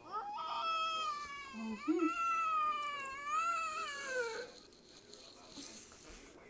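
A young child's long, high-pitched wail that wavers up and down in pitch for about four seconds, then stops.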